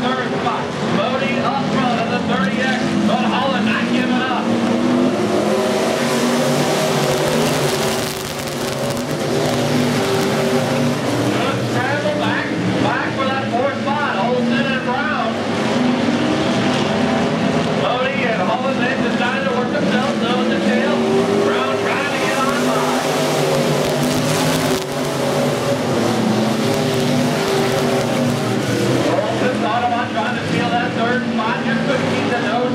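Several dirt-track SportMod race cars' V8 engines running hard at race speed, the pack's overlapping engine notes rising and falling as the cars accelerate and lift around the oval.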